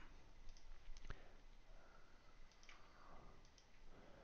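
A few faint, scattered clicks of a computer mouse over quiet room tone.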